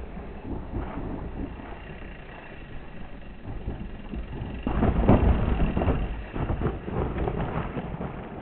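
Mountain bikes riding down a rocky trail: tyres crunching over stones and bikes rattling, with wind buffeting the microphone. It grows louder and busier about halfway through.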